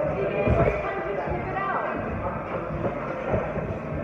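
Sparring thuds: several dull knocks from boxing gloves landing and feet on the ring canvas, over background music and voices.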